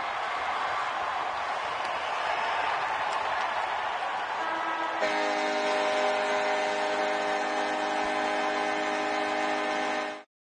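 Steady arena background noise, then about five seconds in the arena horn starts sounding a long, steady multi-tone blast marking the end of the hockey game.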